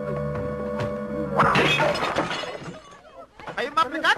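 Film soundtrack music with a steady beat, broken off about a second and a half in by a sudden loud crash, like something shattering, that dies away over about a second. Short bursts of a raised voice follow near the end.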